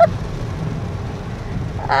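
Steady noise inside a small car driving through pouring rain: rain on the roof and windshield and tyres on the wet road, over a low engine rumble.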